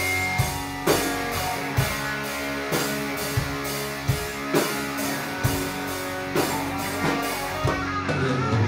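Live rock band playing amplified electric guitar chords over a steady drum-kit beat, with regular drum strokes about twice a second.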